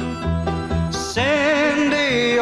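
Song with orchestral backing: repeated bass notes and a plucked-string accompaniment. About a second in, a singer comes in on a long held note with vibrato.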